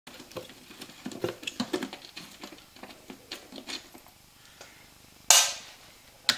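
Screwdriver backing a screw out of the plastic side panel of a 1983 Maico 490 dirt bike: a run of small clicks and ticks from the tool and screw, then one louder, sharp, hissy burst about five seconds in.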